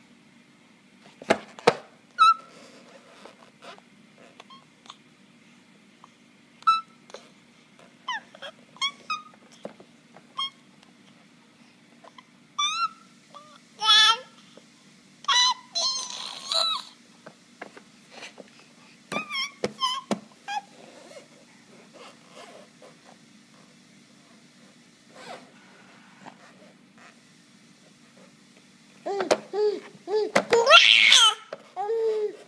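Infant of about eight months babbling and squealing in short separate calls, some sliding in pitch. There is a long lull in the second half, then louder babbling near the end.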